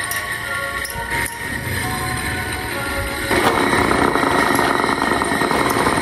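Electric desk fans with improvised blades running, a steady whirring of motors and spinning blades over background music; about three seconds in the whir turns louder and rushier.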